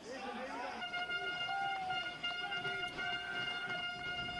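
Stadium crowd ambience heard through the broadcast field microphones, with a steady held tone like a horn starting about a second in.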